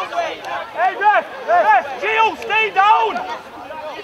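Several voices shouting on a football pitch, short calls overlapping one another without a break.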